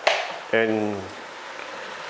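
A kitchen knife slicing through a carrot and striking the cutting board once, a sharp knock right at the start.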